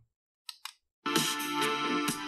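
Two quick clicks from the buttons of a Softy SBS-10 Bluetooth speaker. A moment later the speaker starts playing the next song, music with a steady beat.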